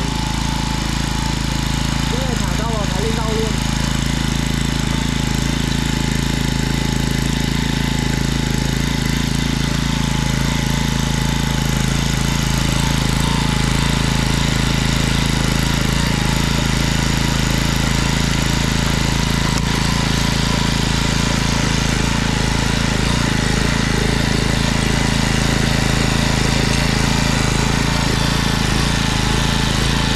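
Yanmar MTe30 mini tiller's small engine running steadily under load, its rotary tines churning through dry, stony soil.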